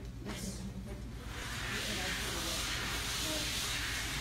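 Steady hiss from a live sound system that comes up about a second in, over a low hum, with faint chatter in the room.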